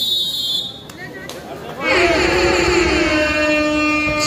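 A short, shrill whistle blast right at the start, typical of a referee's whistle at a kabaddi match. For the last two seconds a man's voice holds one long, drawn-out call.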